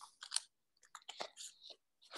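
A pause holding only a few faint, short clicks and crackles scattered across two seconds, with near silence between them.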